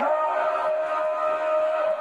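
A steady held sound of several pitches at once, like a sustained musical chord.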